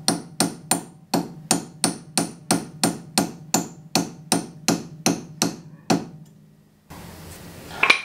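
Hammer driving a metal punch against the locking tab of a BMW E30 front axle nut, flattening the tab so the nut can be undone. The blows are steady and evenly spaced, about three a second, and stop about six seconds in.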